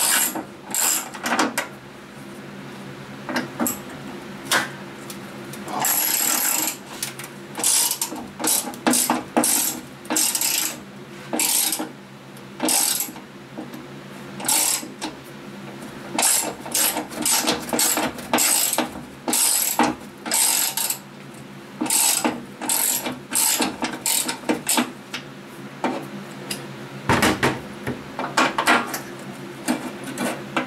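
Hand ratchet clicking in short, irregular bursts as bolts are worked out of a steel tractor seat pan, with pauses between the runs of strokes.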